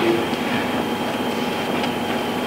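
Steady room background noise: a constant hiss with a faint, steady high whine.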